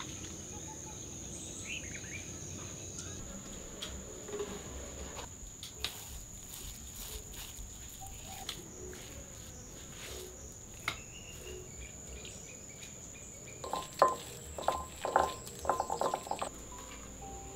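Insects shrilling in one steady high-pitched drone, with a few faint clicks and taps. Near the end comes a quick run of sharp clinks and knocks, the loudest sounds.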